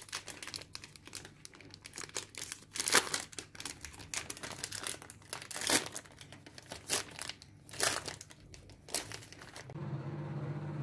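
Crinkly plastic wrapper of an ice-cream bar being crumpled and torn open by hand, a run of sharp crackles with the loudest about three seconds in and again near six and eight seconds.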